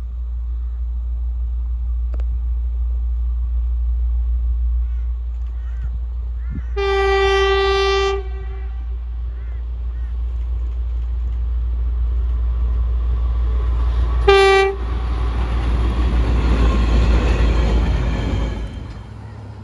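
Diesel locomotive WRA004 approaching with a low rumble, sounding its horn in one long blast about seven seconds in and one short blast a few seconds before the end. The rumbling noise of the grain train rises and is loudest near the end as it passes close by.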